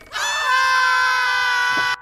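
A person's scream: one long scream held at a steady high pitch that cuts off sharply near the end.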